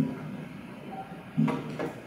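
A pause in a man's speech: low room tone, with a short hesitant voiced sound at the start and another brief one with a few faint clicks about one and a half seconds in.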